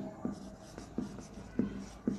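Marker pen writing on a whiteboard: about six short separate strokes as a word is written.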